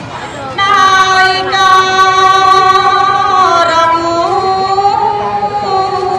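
Khmer smot, a Buddhist chant, sung by a woman's solo voice into a microphone. After a short breath at the start she holds long, slowly wavering notes, with the pitch sinking about halfway through and rising again into a new phrase near the end.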